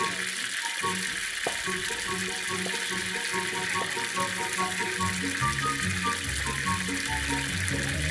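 Water gushing steadily from a gravity-fed standpipe tap and splashing onto concrete, under background music with a melody and bass notes.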